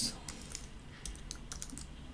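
Computer keyboard typing: a quick, uneven run of key clicks as a single word is typed.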